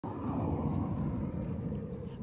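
A steady low rumble of outdoor background noise, with no distinct event in it.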